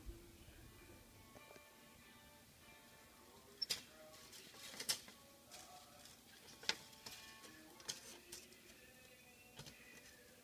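Soft background music with held tones, with about half a dozen sharp clicks and knocks over it in the second half.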